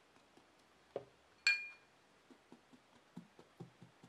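A single glass clink with a short bright ring about one and a half seconds in, after a softer tick. About halfway through, faint quick soft taps begin, about four a second.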